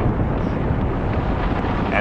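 Wind buffeting the microphone outdoors: a steady, low rumbling roar with no distinct events.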